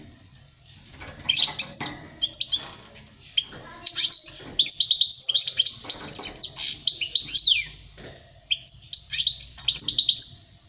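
European goldfinch (chardonneret) singing: fast twittering phrases of high, quick sliding notes, in three bursts starting about a second in, about four seconds in, and near the end, with short pauses between.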